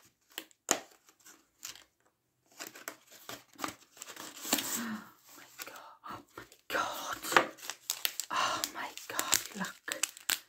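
Rustling and crinkling of craft card and a clear plastic sequin pouch being handled, in short bursts that come thickest over the last three seconds.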